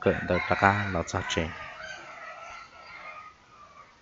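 A rooster crowing once: a long drawn-out call that fades out, following about a second of a person speaking.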